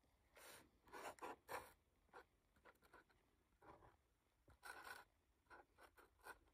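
Faint strokes of a broad-tip marker drawn across paper in lettering, a run of short scratchy strokes with uneven pauses between them.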